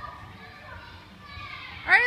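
Faint children's voices and chatter, then a loud voice starts shouting near the end.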